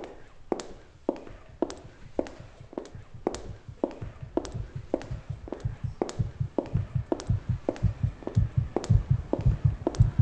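Recorded footsteps, an even walking pace of just under two steps a second, with a low heartbeat underneath that grows louder and more insistent toward the end. It is a sound-art composition of the artist's own steps and heartbeat, made to convey her body's reaction while walking in the street.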